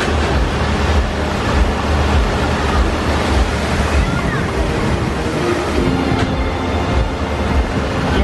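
Wind buffeting the microphone, a heavy, fluctuating low rumble over a steady outdoor din with faint voices.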